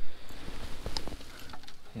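Small knocks and clicks of a fishing rod and spinning reel being handled on a wooden dock, the sharpest knock right at the start, over a light patter of rain.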